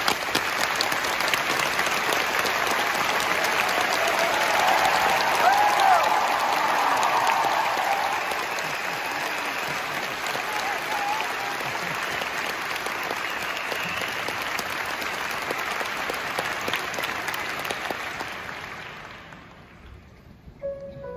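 Large concert-hall audience applauding, with cheering that swells about five seconds in. The applause dies away near the end.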